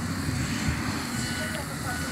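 Wind buffeting the microphone of a phone carried on a moving bicycle: a steady, uneven low rumble.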